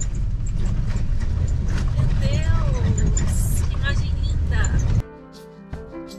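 Steady low rumble of a vehicle driving on an unpaved gravel road, heard inside the cabin. About five seconds in it cuts off suddenly and gives way to background music.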